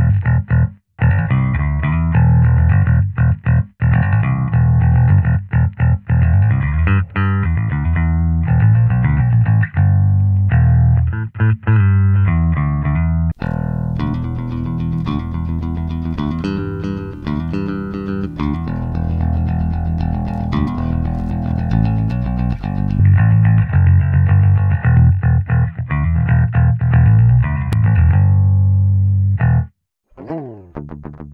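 Electric bass guitar played through the Antelope Discrete 8 Pro's AFX DSP plugin chain: a bass line of short notes with brief gaps. About 13 seconds in it switches to the unprocessed D.I. signal, brighter and more sustained.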